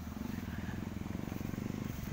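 An engine running steadily in the background: a low, rapidly pulsing rumble.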